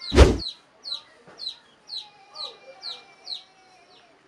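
Backyard chickens calling after a fight: a brief loud rush of noise at the start, then a run of about eight short, high chirps, each sliding down in pitch, about two to three a second, with faint lower clucking beneath.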